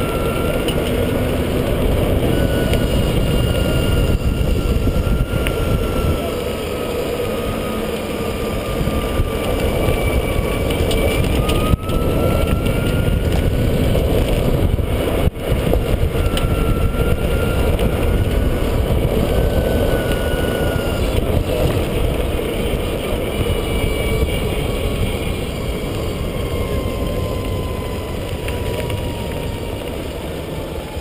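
EZGO RXV golf cart driving along a paved cart path, heard from a camera mounted low on its side. A thin drive whine slides up and down in pitch with the cart's speed, over heavy wind rumble on the microphone.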